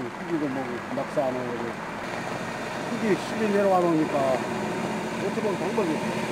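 A man speaking Korean in short phrases over a steady background hiss of outdoor noise.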